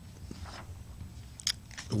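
Faint handling noise, most likely paper being shuffled and moved on a desk: soft rustles and a few small clicks, the sharpest about a second and a half in.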